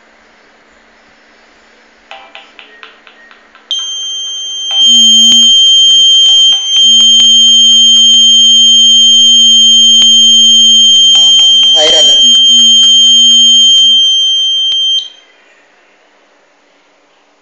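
Piezo alarm buzzer on a microcontroller security board sounding one continuous high-pitched tone for about eleven seconds: the fire alarm set off by a lit match at the flame sensor. A louder, lower steady hum sounds with it for most of that time.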